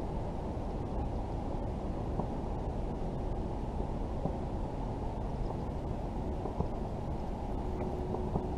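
A steady, muffled low rumble of outdoor noise on the camera microphone, with a few faint clicks.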